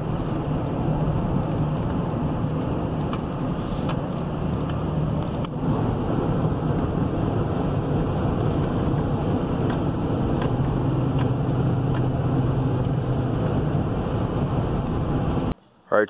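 Road noise inside a moving vehicle's cabin: steady engine and tyre noise with a low hum. It stops abruptly near the end.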